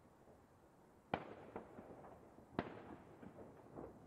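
Fireworks going off: two sharp bangs about a second and a half apart, each trailing off in an echo, with smaller pops between and after them.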